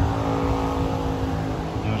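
A motor vehicle's engine running with a steady low note over traffic noise. A voice starts near the end.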